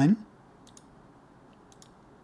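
Light computer mouse clicks: two quick pairs, about a second apart, over faint room tone.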